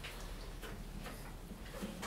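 Quiet room tone with a few faint, irregular light clicks.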